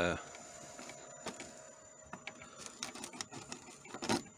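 Rapid small clicks and crackles of a crossbow bolt being worked and pulled out of a punctured LCD TV screen, growing denser in the second half.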